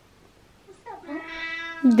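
A domestic cat meowing once, a single drawn-out call of about a second that starts just under a second in.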